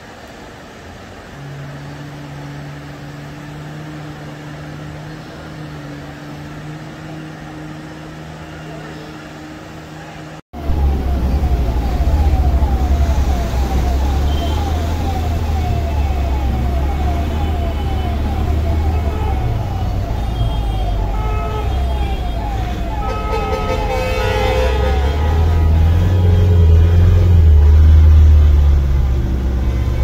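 Rushing floodwater, a loud low rumble, with a siren's short rising tone repeating about twice a second over it for a dozen seconds. Before a cut about ten seconds in there is only a quieter steady hum.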